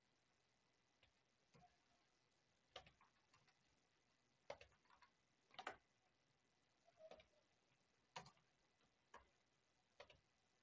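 Faint, scattered clicks of a computer keyboard and mouse, about seven single clicks spaced irregularly a second or so apart, over near silence.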